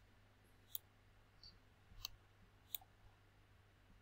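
Three sharp computer-mouse clicks about a second apart, with a fainter tick between the first two, over faint room tone with a low hum.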